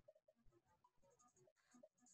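Near silence, with only faint traces of sound.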